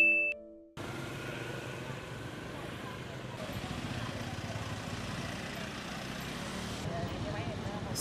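A chime's last note rings out and fades in the first half-second. Then a steady hum of street traffic follows, with faint voices.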